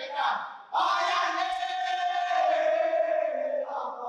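Saman dancers' voices chanting loudly in unison: a short call, a brief break, then one long held call that stops near the end, followed by another short call.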